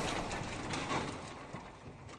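Clattering sound effect of a pile of blocks tumbling and knocking together, fading away with scattered small knocks.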